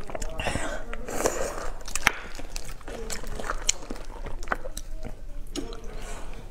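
Close-miked wet chewing and mouth sounds of someone eating soft beef bone marrow, with scattered short sharp clicks throughout.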